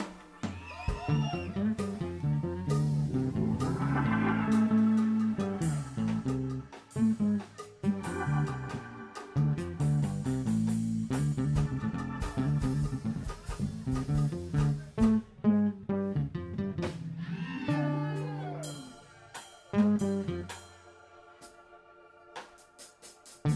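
Instrumental jazz-funk music: guitar and bass lines over drums, with a few sliding notes, thinning out and dropping much quieter near the end.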